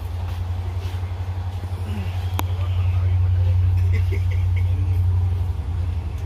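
Inside a train coach: a steady low rumble of the train running, with faint voices of other passengers and a single sharp click about two and a half seconds in.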